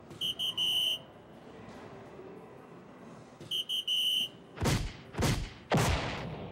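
Electronic DARTSLIVE soft-tip dart machine sounding off: a short high beeping chime (two brief beeps and a longer one) twice as darts score, then three loud swooshes about half a second apart as its award animation plays.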